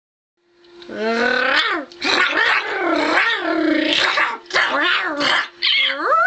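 A girl's voice making mock animal growls: several long bursts with wavering pitch, starting about a second in.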